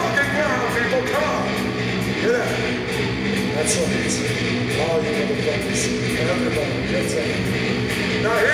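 Electric guitar playing a steady, held passage over a sustained low drone from a live metal band, with wavering voices shouting over it.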